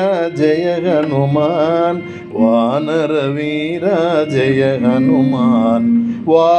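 A male voice singing long, heavily ornamented melodic phrases of a Carnatic-style Hanuman bhajan in raga Abheri, with a short break about two seconds in.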